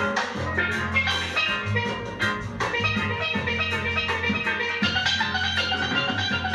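Live ska band music with a steel pan playing a quick stream of ringing notes over bass guitar and drums.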